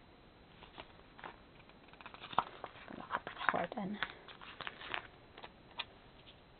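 Paper sticker sheets being handled, rustling and crinkling, with a busy run of small clicks and crackles in the middle.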